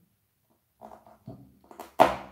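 Faint handling noises of hands and tools on a work table, three short sounds, then one sharp knock near the end that is the loudest sound.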